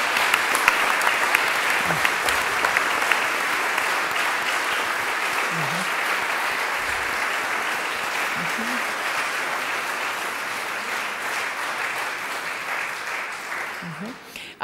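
Audience applauding: dense clapping that slowly dies down near the end.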